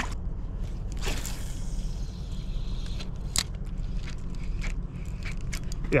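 A fishing cast with a spinning rod and reel: a brief rush of line paying out about a second in, then a sharp click, with small ticks of reel handling, over a steady low hum.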